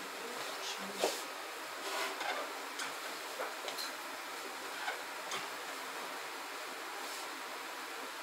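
Movement noise from a person shifting and settling on a sofa: scattered light clicks and taps over a steady hiss, the loudest about a second in.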